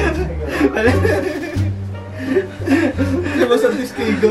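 Group of men laughing and chuckling over background music with a bass line stepping between notes.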